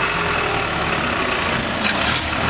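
Light truck's engine running steadily as the truck drives slowly past at close range.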